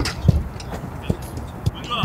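A series of soft, irregular thumps, about two or three a second, with a voice starting right at the end.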